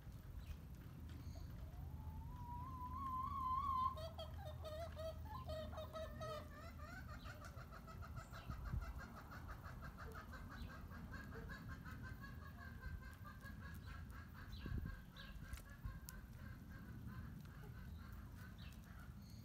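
Backyard chickens calling: a wavering call that rises in pitch about two seconds in, some broken calls, then a long, warbling call that carries on for about ten seconds, with a few soft knocks.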